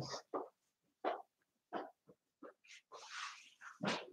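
Faint footsteps walking away, a soft step about every two-thirds of a second, with a brief rustle about three seconds in.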